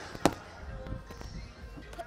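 A boxing glove punch landing on a focus mitt: one sharp smack about a quarter second in, then low gym background noise.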